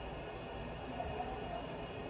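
Quiet, steady background hiss of room tone, with no distinct sound event.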